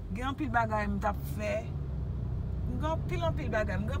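Talking over the steady low rumble of a car, heard from inside the cabin as it drives.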